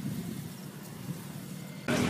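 Faint, steady low rumble of outdoor background noise, with louder street sound cutting in just before the end.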